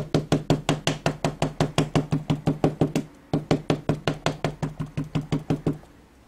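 Dye ink pad tapped rapidly against a rubber stamp mounted on an acrylic block to ink it, a quick, even patter of about seven knocks a second. It breaks off briefly about three seconds in and stops just before the end.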